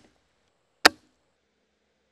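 A single sharp metallic click from the lock of a flintlock muzzleloader, about a second in, as the rifle is readied to fire. Otherwise near silence.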